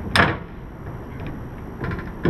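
Hinged cutting-board lid over a transom sink being lifted open: one sharp knock just after the start, then a lighter click near the end.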